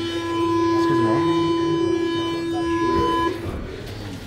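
A steady electric tone with many overtones from a Paris Métro train standing at the platform. It cuts off suddenly about three seconds in, as the carriage doors open.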